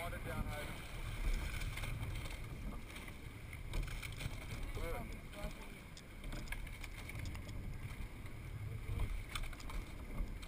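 Coxed sweep-oar rowing boat underway at normal pressure: water rushing past the hull and wind rumbling on the microphone, the low sound swelling every few seconds with the crew's strokes.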